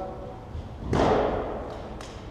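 A single thud about a second in, trailing off in the echo of a large gym hall.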